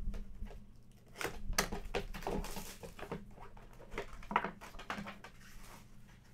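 Hands opening a cardboard box and lifting out a plastic-cased graded trading card: irregular clicks and taps of hard plastic and cardboard, with a short scraping rustle about two and a half seconds in.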